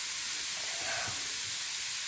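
LOL Pearl Surprise fizzing clamshell dissolving in a bowl of water, giving a steady fizzing hiss.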